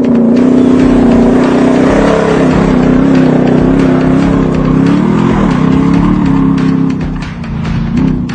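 Off-road 4x4 engine running loud at high revs, its pitch wavering and briefly dipping and climbing again about five seconds in, with music underneath.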